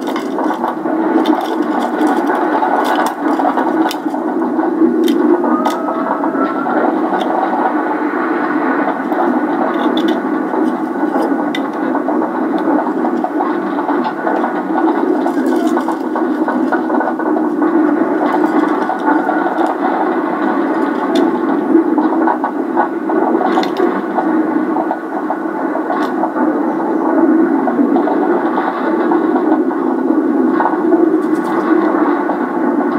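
Roller coaster train running along its steel track: a loud, steady rumbling rattle with scattered sharp clicks.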